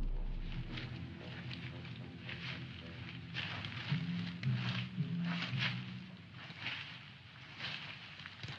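Dry brush and twigs rustling and crackling underfoot as soldiers push through undergrowth, in irregular crunches about twice a second, with a faint low hum in the middle. The tail of the intro music fades away in the first second.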